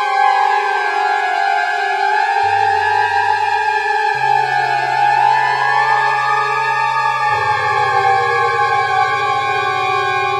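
Electronic music: sustained synthesizer tones that glide slowly in pitch, sliding down in the first second and back up around the middle, over a low bass note that changes pitch a few times.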